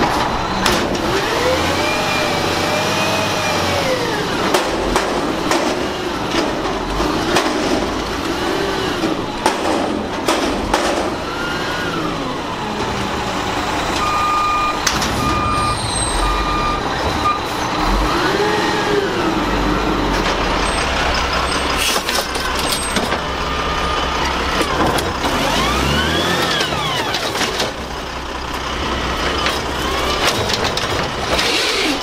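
Front-loader garbage truck's engine revving up and down again and again, each rev a rising-then-falling whine, as its hydraulics work the lift arms to dump a wheeled bin into the hopper, with knocks and bangs along the way. A reversing beeper sounds a few times about halfway through.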